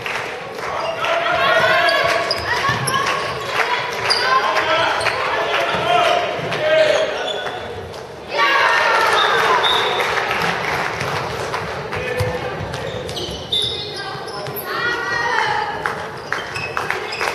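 Handball match sounds in a sports hall: the ball bouncing on the hard court floor, sneakers squeaking and players' voices, all echoing in the hall.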